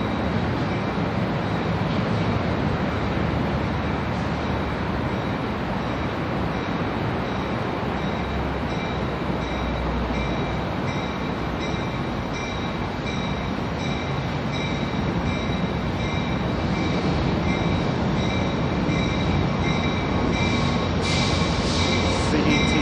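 Amtrak passenger train running on the rails, a steady rumble with a thin high wheel squeal riding on top, growing louder near the end.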